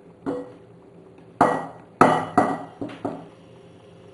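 Pot, spatula and glass mixing bowl knocking together as lemon cream is scraped out of the pot into the bowl: about six sharp knocks, some ringing briefly.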